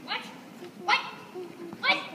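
Three short, high-pitched yelps from a child's voice, about a second apart.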